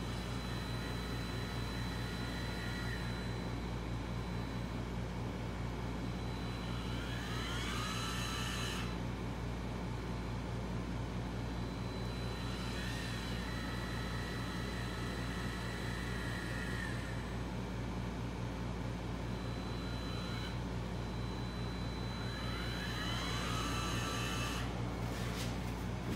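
Electric linear actuators lowering a robotic mower's trimmer arms, whining in several separate runs of a few seconds each, some gliding in pitch as they start or stop. Under them runs a steady low machine hum.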